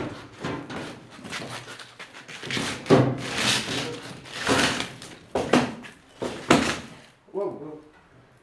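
Irregular knocks, scrapes and thuds as a heavy workshop machine is tilted and walked across a tiled floor by hand.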